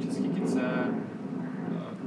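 Brief, indistinct speech from the race footage's soundtrack, played through loudspeakers in a room, over a low steady hum.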